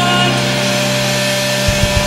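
Rock band playing live: a loud held chord on distorted electric guitar and bass, with drum beats coming back in near the end.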